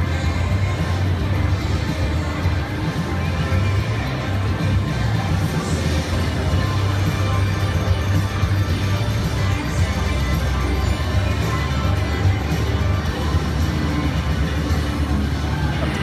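Casino slot-floor din: electronic slot machine music over a steady low hum, with faint crowd noise.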